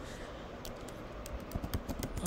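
Typing on a computer keyboard: a run of light keystrokes, most of them in the second half.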